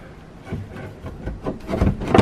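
Silverado side-mirror assembly being worked loose and pulled off the bare door shell. Irregular scraping, rubbing and small knocks of plastic against metal grow louder toward the end.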